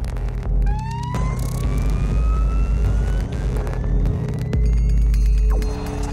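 Electroacoustic music from electric strings and electronics: a loud, deep drone under a single high tone that glides slowly upward over about five seconds, starting about a second in. Near the end a rapid stuttering texture comes in.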